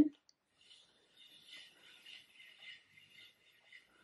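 Faint, soft whirring and rustling of a wooden spinning wheel turning while polyester-acrylic fibre is drafted into yarn, with small uneven swells.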